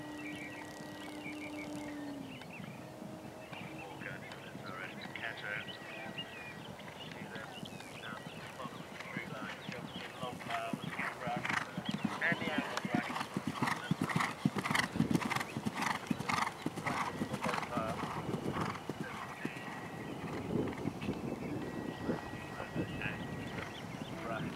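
Hoofbeats of a horse galloping on turf, a rapid drumming that grows louder as the horse passes close, loudest around the middle, then eases off.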